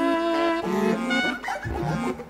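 Synclavier music: layered sustained notes that change pitch about every half second, breaking into quick sliding notes near the end as a low bass comes in.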